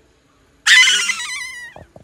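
An angry cat's loud cry, starting about half a second in. It is harsh and hissing at the onset, then falls in pitch and fades over about a second.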